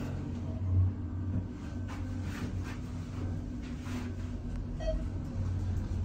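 Dover traction elevator, modernized by thyssenkrupp: the cab doors close with a thump about a second in, then the car runs with a steady low hum as it travels down.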